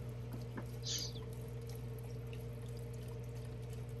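Beef stock poured from a carton into a pot of cooked ground turkey and mushrooms: a faint, steady pour, with a brief hiss about a second in, over a low steady hum.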